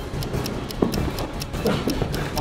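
Background music with a fast, even ticking beat, about six ticks a second, and a single thump about a second in.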